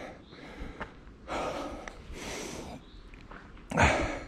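A trail runner's heavy breathing, out of breath on a steep uphill climb: noisy exhalations about once a second, with a louder one near the end.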